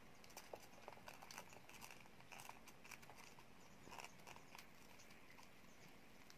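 Faint scattered clicks and rustles of thin wires and a plastic telephone handset cap being handled, busiest in the first four seconds or so.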